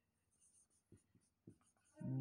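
Near silence, with a few faint strokes of a marker writing on a whiteboard between about one and one and a half seconds in.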